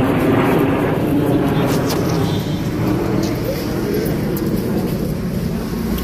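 Loud, steady street noise: many voices of a crowd talking at once over a rumble of traffic.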